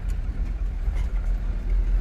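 Steady low rumble of a pickup truck's engine and running noise, heard from inside the cab.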